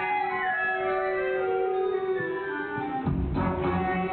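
Stage-musical pit band music: a held chord with a descending line, then about three seconds in, bass and a beat come in as the number turns upbeat.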